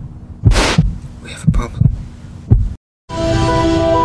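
Sound effect of an alien egg about to hatch: irregular low, heartbeat-like thumps with a short hiss about half a second in. After a brief silence, music with sustained chords starts about three seconds in.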